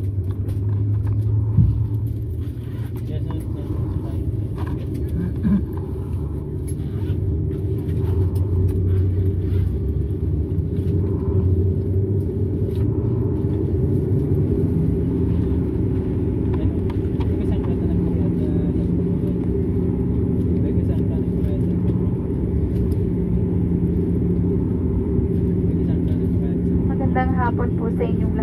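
Steady low hum and rumble inside the cabin of a Dash 8-400 airliner waiting on the ground, with a steadier droning tone joining about halfway through. A cabin announcement voice begins right at the end.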